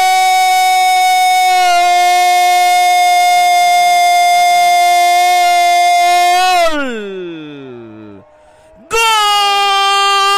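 A Spanish-language radio football commentator's goal cry: one long held 'gooool' on a steady high note, sliding down and trailing off about two-thirds of the way through. After a short breath, a second held cry begins near the end.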